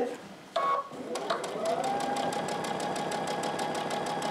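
Electric sewing machine starting about a second in: its motor whine rises briefly, then holds steady under a rapid, even ticking of the needle stitching a fabric hem.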